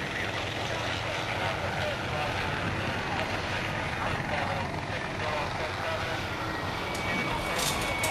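A steady rumbling ambient noise bed, like wind or a distant engine, with faint murmuring voices under it, forming the quiet sound-effect intro of a recorded song. A few sharp clicks come near the end.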